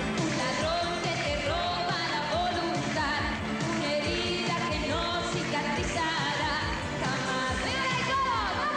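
A woman singing a 1980s Latin pop song over a full band backing with a steady drum beat.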